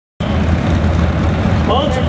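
Chevrolet pickup's engine running steadily and loudly under load as it pulls a weight-transfer sled. A man's voice comes in near the end.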